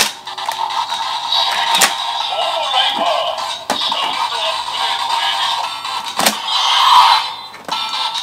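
Electronic music and sound effects playing from the small speaker of a DX Seiken Swordriver toy belt with the Primitive Dragon Wonder Ride Book fitted. Sharp plastic clicks come about two, four and six seconds in as the toy's parts are worked.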